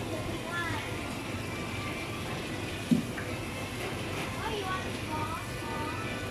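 Shop background of distant chatter and faint music over a steady hum, with one short thud about three seconds in.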